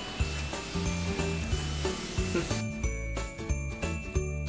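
Background music with jingle bells over a bass line that steps between held notes.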